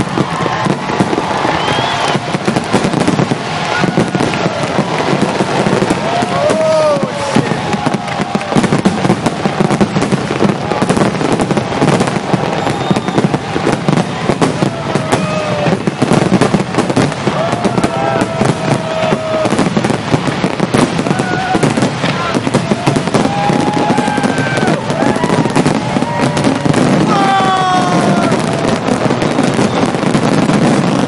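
Fireworks display in full barrage: shell bursts and crackling following one another without pause.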